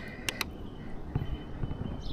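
Quiet outdoor background with a low rumble and two quick light clicks about a third of a second in.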